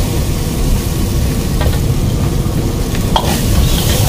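Noodles sizzling as they are stir-fried in a large wok and tossed with a metal ladle, over a steady low rumble. The ladle clinks against the wok a couple of times, about one and a half and three seconds in.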